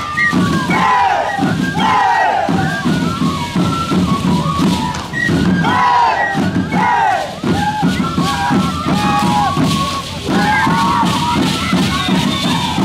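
Group of Shacshas dancers shouting together in many short overlapping calls, several falling in pitch, over the rhythmic rattle of the shacapa seed-pod rattles on their legs as they stamp.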